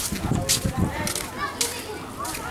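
Children's high voices calling and chattering as they play, over short crisp hissing noises that come about every half second.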